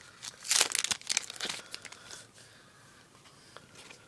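Foil trading-card pack wrapper crinkling and tearing as the pack is opened, a flurry of crackly rustles in the first second and a half, then only faint handling of the cards.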